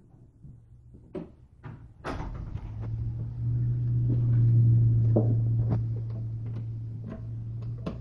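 Door hardware clicking and rattling as a hand works the metal latch plate of an interior door, with several sharp clicks. Under them a steady low hum sets in about two seconds in, swells to its loudest mid-way and then eases.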